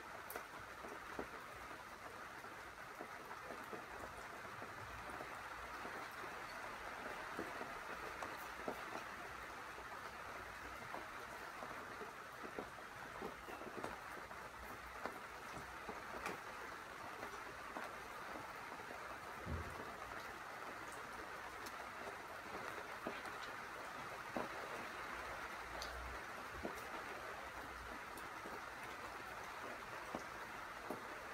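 Rain falling: a steady, even hiss with scattered drops ticking.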